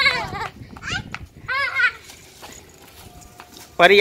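A young child's high-pitched, wavering playful squeals, in short bursts during the first two seconds. After a lull, a lower voice calls a name near the end.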